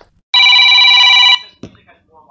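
A telephone ringing: one ring of several steady high tones, rapidly pulsed, lasting about a second.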